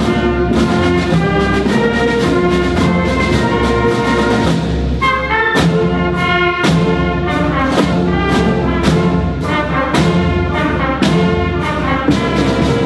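High school marching band playing a medley live in a school gymnasium: brass, flutes and a drum line, with regular drum strokes under sustained chords that change about five seconds in.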